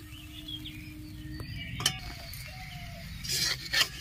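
A few sharp clicks and knocks of a steel spatula against a metal wok as a rolled aloo paratha is laid in the pan to cook. The loudest knock comes near the end, over a faint steady background hum.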